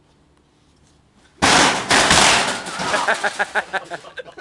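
A sudden loud crash about a second and a half in, followed by a rapid clattering of impacts that dies away, as a stunt run ends in a collision.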